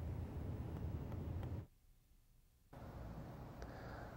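Faint room tone with a low hum, which drops out to dead silence for about a second in the middle and then comes back as a fainter hiss.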